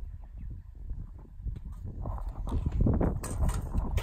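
Irregular footsteps and scuffing on dry bare ground, with short knocks, busier and louder in the second half.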